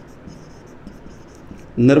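Marker pen writing on a whiteboard: a run of short, faint, high scratchy strokes. A man's voice comes in loudly near the end.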